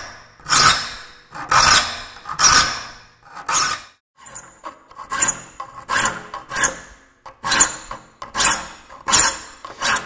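Saw file rasping across the steel teeth of a hand saw in a saw vise, in repeated single strokes about once a second with a brief pause about four seconds in, the first strokes the loudest. The teeth are being filed with fleam, crosscut fashion, and are still being shaped rather than finished sharp.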